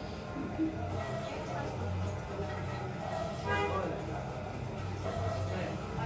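Faint background voices and music over a low hum.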